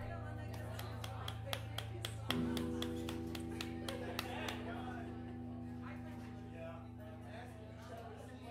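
Guitar amplifier hum between songs, with a run of sharp ticks about four a second. A little over two seconds in, a guitar chord is struck and left ringing, slowly fading, over faint bar chatter.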